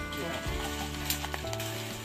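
Background music with held low notes, over the crackle and occasional sharp snap of dry twigs and brushwood being broken off and handled.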